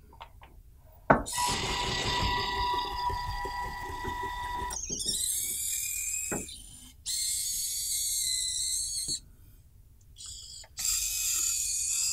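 A small robot's 12-volt DC gear motors whine steadily as it drives forward, then its servo motors whir as the arm and gripper move, in several short runs of a few seconds each with brief pauses between them; a click about a second in marks the start.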